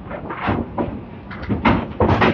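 Bowling alley clatter: candlepins and balls knocking on the lanes, a few irregular sharp knocks with some ring after them, the loudest about half a second in and again near the end.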